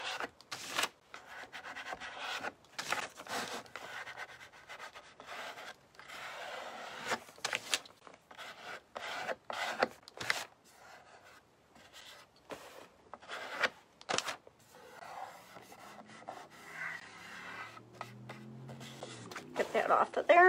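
Plastic card rubbing and scraping over paper glued to a wooden tray, in repeated short strokes that smooth the paper flat.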